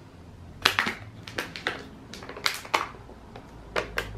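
Plastic packaging and a small plastic cup being handled on a table: a string of short, sharp crackles and clicks over about three seconds.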